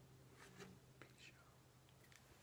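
Near silence: the last low note of an acoustic guitar fading out, with a few faint soft noises about half a second and a second in.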